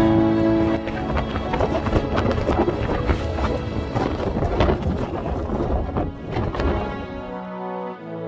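Wind buffeting the camera microphone: a loud low rumble with irregular knocks, from about a second in until near the end. Background music runs underneath and carries on alone near the end.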